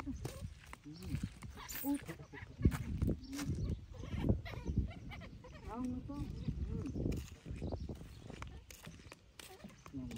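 A baby monkey making short, high squeaky calls that rise and fall, several in quick succession near the middle, over low thuds of footsteps on a wooden boardwalk.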